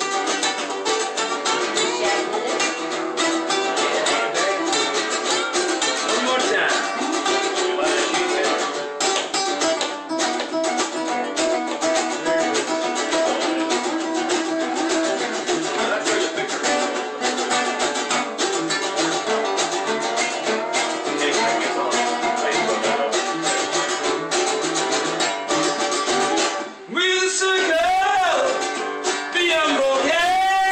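Two acoustic guitars, one a nylon-string classical guitar, played together in a steady instrumental passage with busy picked notes. Near the end a man's voice comes in, sliding up and down in pitch.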